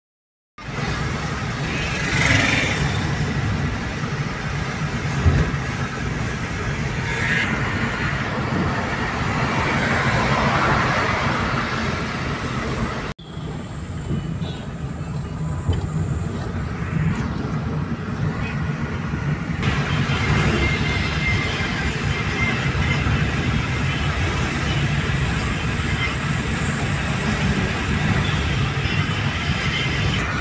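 Steady road noise of a moving car heard from inside the cabin: a low rumble of engine and tyres on the highway. The sound cuts out for a moment at the very start and breaks sharply about 13 seconds in.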